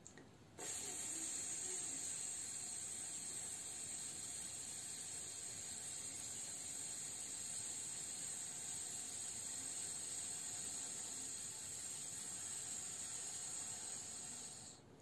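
A man's long, steady hiss: a slow exhalation through the teeth, held until his breath runs out, as a diaphragm-strengthening breathing exercise. It starts about half a second in and runs on without a break.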